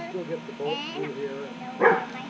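A dog barks once, short and sharp, near the end, over children's voices.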